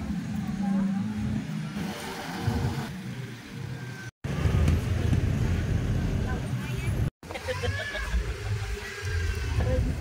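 Outdoor street ambience: a low traffic rumble with indistinct voices, cut off abruptly twice, about four and seven seconds in, as clips change.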